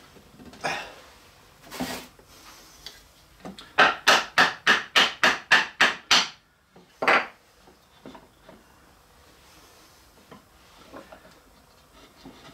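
Wooden mallet tapping a glued walnut leg down into its slot to seat it fully in the stool's bracket: a quick run of about ten sharp wood-on-wood taps, roughly four a second, then a single tap a second later. A couple of softer knocks of the parts being handled come before.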